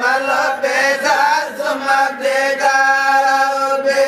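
Voices chanting an Islamic zikr (dhikr) in a melodic line, ending on one long held note.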